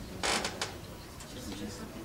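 Paper envelope rustling as it is handled and pulled open. There is one short crackling burst soon after the start, then fainter paper handling.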